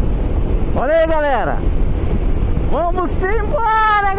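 A voice calling out in long, drawn-out gliding cries, once briefly about a second in and again from about three seconds on. Under it runs the steady rumble of wind and the engine of a Sym MaxSym 400 scooter at highway speed.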